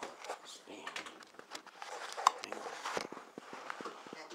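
Handling and movement noise: scattered clicks, knocks and rustling, with one sharp click a little past halfway.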